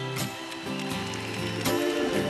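Live band playing a soft, slow backing of held chords, with a new chord struck just after the start and again near the end.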